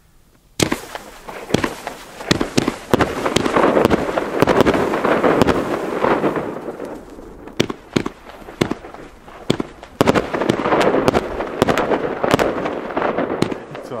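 Funke Funkenweide 30 mm firework battery firing its shots: a sharp first report about half a second in, then reports at roughly one a second. Between them a dense noise from the bursting gold willow stars swells and fades twice.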